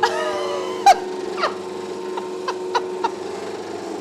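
Bagel-shaping machine running with a steady hum. A short high vocal sound in the first second, then a series of sharp clicks over the next two seconds.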